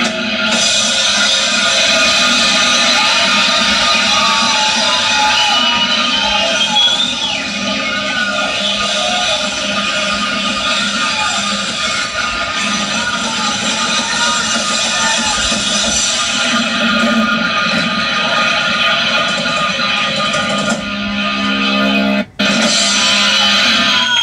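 Live rock band playing, electric guitar to the fore, with sliding, held notes over a dense, steady wash of sound. Near the end the sound cuts out for a moment.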